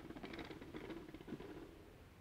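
Ballpoint pens rolling like rollers under a hardcover book pushed across a wooden tabletop: a rapid, faint rattle of clicks over a low rumble that dies away about one and a half seconds in.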